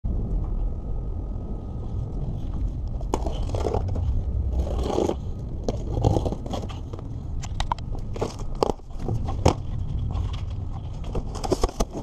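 Cardboard box being handled and opened: irregular scraping, crackling and clicking of cardboard flaps and packing tape, thickening through the second half, over a steady low rumble.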